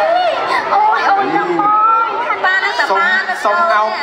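Speech only: several people talking in Thai through stage microphones, their voices overlapping.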